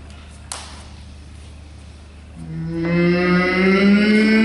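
Low voices begin a sustained sung tone about two seconds in that slowly rises in pitch, vocalizing a drawn line of graphic notation. A single sharp click comes about half a second in.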